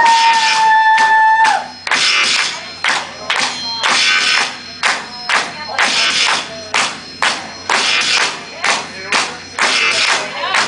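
Guitar strummed hard in a fast, driving rhythm. It opens under a held high note that bends down about a second and a half in.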